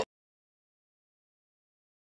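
Complete silence: the sound track drops out abruptly at the very start, cutting off a voice mid-word.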